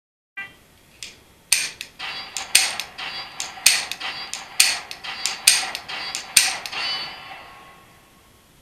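A short beep, then a quick string of about a dozen sharp metallic clicks, each with a brief ringing tail, from a Beretta 92 with a LaserLyte laser barrel insert being dry-fired at simulated steel plates. The ringing dies away near the end.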